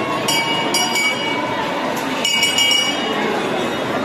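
Metal temple bells struck in pairs, two clangs about half a second apart, repeating about every two seconds, each ringing on briefly over the steady murmur of a crowd.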